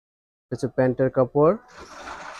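A short spoken phrase, then cotton fabric rustling as a folded dress piece is lifted and spread out, starting near the end.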